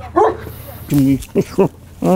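Caucasian Shepherd Dog making short vocal sounds: a brief rising yip near the start, then three short low calls about a second in.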